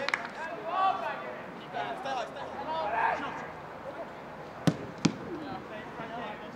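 Players shouting and calling on a training pitch, then two sharp kicks of a football in quick succession about two-thirds of the way through.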